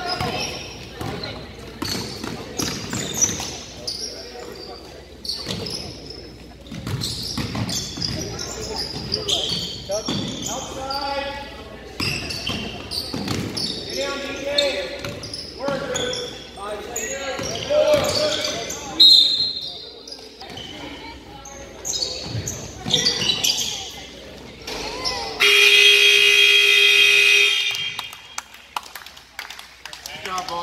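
Basketball dribbling on a hardwood gym floor during a youth game, with players and spectators calling out in the gym. Near the end the scoreboard buzzer sounds once, a steady tone lasting about two and a half seconds.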